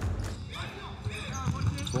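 Futsal match play on an indoor court: short squeaks of players' shoes on the court floor and thuds of the ball, over the murmur of the crowd. The squeaks begin about half a second in.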